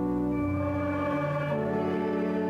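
Hymn music with sustained organ-like chords that change to a new chord twice, about half a second and a second and a half in.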